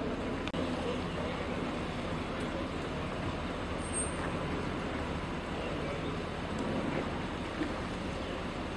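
Steady street noise from motor vehicles, an even rumble.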